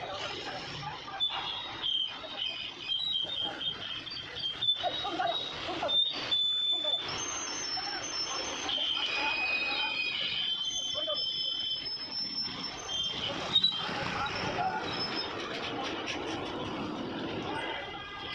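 Men's voices calling out while a steel tipper body hanging from a crane is lowered onto a truck chassis, with high metallic squeals and a few sharp knocks from the steel body and its rigging.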